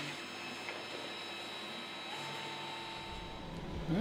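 Steady room tone: a faint electrical hum with thin high whines from the studio's equipment. A second steady tone joins about halfway, and a low rumble comes in near the end.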